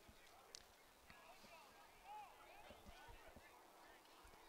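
Near silence: faint, distant voices of players and spectators calling out on the lacrosse field, with a few soft thumps.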